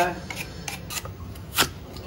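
Vegetable peeler scraping the skin off a lotus root, a faint rasping rub, with one sharp knock about one and a half seconds in.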